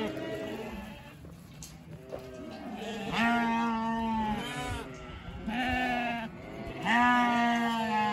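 A yard of first-cross wether lambs bleating, many calls overlapping. Three loud, long bleats start about three, five and a half and seven seconds in.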